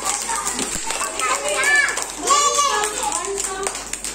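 Young children's voices chattering and calling out together, with a few scattered hand claps.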